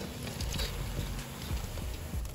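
Breaded cutlet balls sizzling in hot coconut oil in a wok, with a few light knocks of a wire-mesh skimmer against the pan as they are scooped out.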